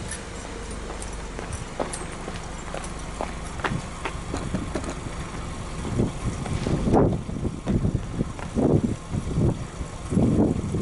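Subaru Legacy B4 2.5i's 2.5-litre flat-four (boxer) engine idling, heard at the tailpipe. In the second half, irregular low thumps come over the steady hum.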